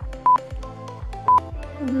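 Workout interval timer counting down: two short beeps about a second apart, marking the last seconds of the work interval, over background music with a steady beat.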